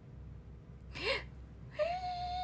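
A young woman's short breathy laugh, a quick gasp that rises in pitch, about a second in; a drawn-out vocal sound starts near the end.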